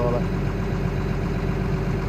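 Diesel engine of a tracked excavator idling steadily, an even low hum.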